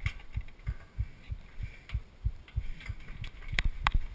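Metal full-height turnstile being pushed round by hand, with two sharp clicks near the end, over a run of low dull thumps about three a second.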